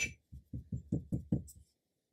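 A sharper click right at the start, then a quick, even run of about seven soft, dull taps in just over a second, stopping before the end.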